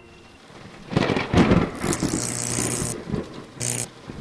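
Intro sound effect of thunder-like rumbling and electric crackle, starting about a second in, with a short sharp burst near the end.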